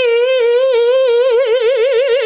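A man singing one sustained note as a vocal trill demonstration. The note starts almost steady, then from about a second in it flips quickly and evenly between two neighbouring pitches, wider and more distinct than vibrato.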